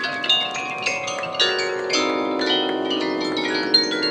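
Marching band front ensemble playing mallet percussion: quick struck marimba and bell-like notes ringing out, with held lower notes coming in about a second and a half in.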